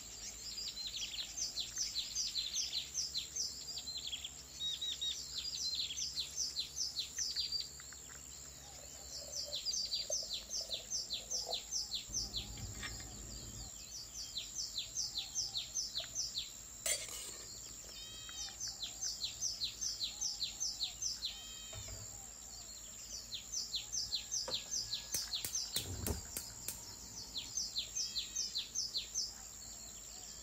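Birds singing: phrases of rapid, sharp falling chirps, about four a second, each phrase lasting several seconds with short pauses between. A click sounds about halfway through and a thump near the end.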